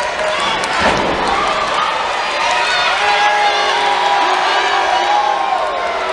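A wrestler's body hits the wrestling ring mat with one heavy thud about a second in. An arena crowd cheers and shouts throughout, with many voices yelling over one another.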